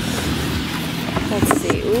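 Lawnmower engine running steadily. About a second and a half in, a few short clicks and crinkles come from a cardboard parts box and its plastic packaging being handled.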